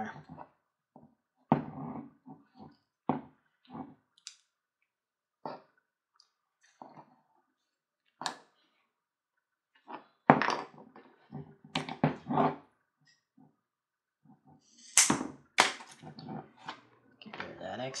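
Rawhide lace being pulled snug and worked around an axe handle by hand: irregular short rubbing and knocking sounds with brief silences between them, busier and louder in the second half.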